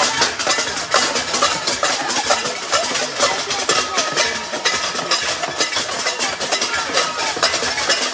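Many metal cooking pots being banged at once by a crowd: a dense, unbroken clatter of metal strikes with short ringing tones.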